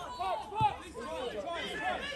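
Faint, overlapping shouts and chatter from players and spectators at a football match, several voices at once with no single clear one.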